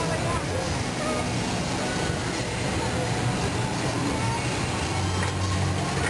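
Propane-fired, forced-air glass furnaces running steadily, a constant rushing noise with a low blower hum, under the murmur of crowd chatter.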